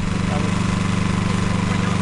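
Dando Terrier drilling rig's engine running steadily at an even, low idle, with no hammer blows.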